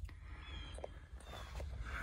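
Faint low rumble with a few soft ticks in the middle: background noise of the open car with the phone being moved about.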